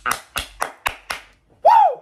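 A man clapping his hands fast, about five claps at roughly four a second, while laughing, then a short voiced exclamation that rises and falls in pitch near the end.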